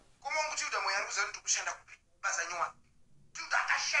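A person talking in three short phrases with brief pauses between them.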